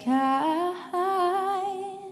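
A woman's voice singing a wordless, hummed melody with vibrato over sustained keyboard notes, in two phrases, the second starting about a second in and fading near the end.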